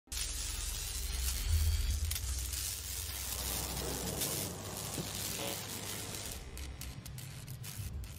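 Logo-reveal sound effect: a crackling, sizzling noise over a deep bass rumble that swells in the first two seconds, then slowly fades.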